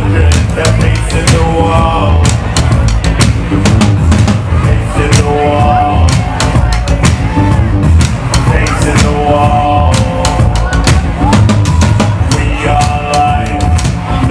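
Rock band playing an instrumental passage: a drum kit keeps a steady, driving beat under a heavy bass and recurring held melodic notes.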